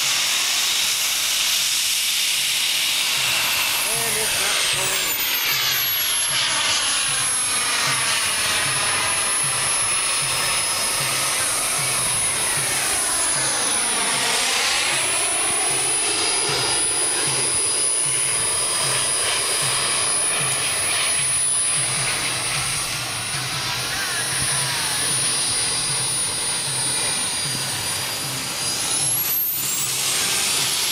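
Small turbine engine of a radio-controlled model jet running with a steady high whine as the jet flies over the field. The sound sweeps in pitch as the jet passes close about halfway through, then eases off a little toward the end.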